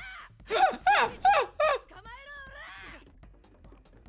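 A high-pitched voice giving four short, loud cries, each falling in pitch, over the first two seconds, then a quieter voice.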